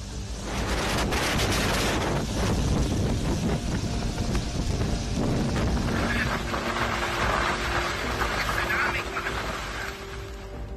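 Strong storm wind gusting through trees and over the microphone, a dense rushing noise, with music playing faintly underneath.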